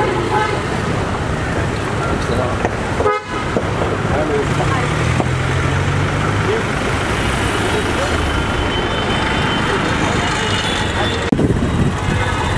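Busy city street traffic: vehicle engines running and car horns honking, under people talking, with a short drop-out about three seconds in.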